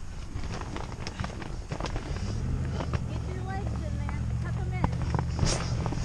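Giant inflatable bubble ball being pushed over grass, with scattered knocks and rustles from its plastic shell. A steady low rumble starts about two seconds in, with faint voices over it.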